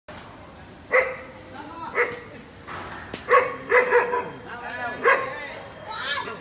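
A dog barking in short, sharp barks, about six of them spaced roughly a second apart.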